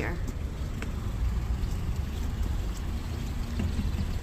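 Low, steady outdoor traffic rumble from cars in the lane nearby.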